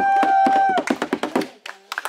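A group singing a worship song with hand claps, ending on a long held note for under a second, followed by a short burst of clapping that dies away about a second and a half in.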